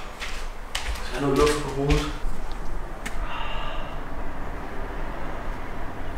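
A man gives one short wordless groan about a second in, in pain from the burn of chili that got onto his head. A few soft knocks sound around it.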